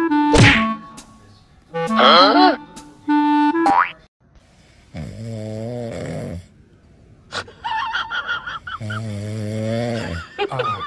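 Bouncy woodwind-like music with a quick sliding cartoon sound effect, then after a short pause two long, low snore-like sounds about four seconds apart from a cat sleeping on its side with its tongue out.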